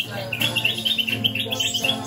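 Acoustic guitar music with a low bass line, and a small bird's rapid high chirping trill over it starting about a third of a second in and lasting just over a second.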